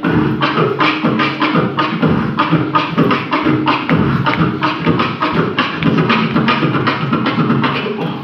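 Beatboxing through handheld microphones: a steady, fast beat of low vocal thumps and sharp clicks, about four strokes a second.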